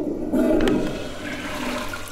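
Toilet flushing: a rush of water that starts just after the beginning and slowly fades away.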